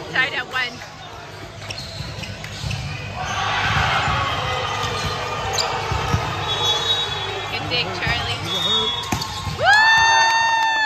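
Volleyball rally in a gym hall: sharp knocks of the ball being hit and short high sneaker squeaks over a background of players' and spectators' voices. A loud, long, steady high tone starts just before the end.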